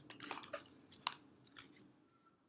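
Handling of a plastic face-cream jar and its folded paper carton: a series of small clicks and crinkles, the sharpest about a second in.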